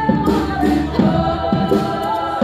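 Live band music: several voices singing together over keyboard, cello and drums, with a steady beat about twice a second.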